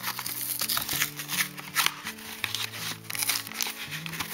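Plastic blister packaging crinkling and crackling in many short bursts as it is worked open by hand. Under it, background music of slow, sustained low notes that change pitch.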